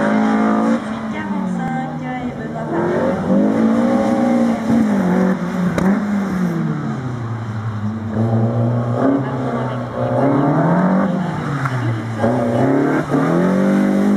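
BMW E30 3 Series competition car's engine pulling hard through a cone slalom. Its pitch rises and falls about five times as the driver accelerates, lifts and brakes between the cones.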